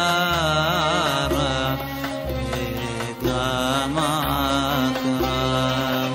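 A male cantor singing a Hebrew piyyut in a melismatic Middle Eastern style, his held notes wavering in ornaments, over instrumental accompaniment whose bass note changes about once a second.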